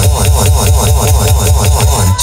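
Live electronic band music: a fast, evenly repeating synthesizer figure of about eight notes a second over a pulsing synth bass.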